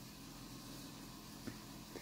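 Quiet room tone, a faint steady hiss, with one soft tap about one and a half seconds in.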